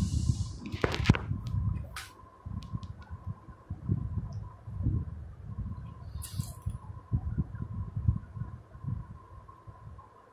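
Irregular low rumbling and soft knocks of a hand-held phone microphone being handled, with a few sharp clicks in the first two seconds, a brief hiss about six seconds in, and a faint steady high tone.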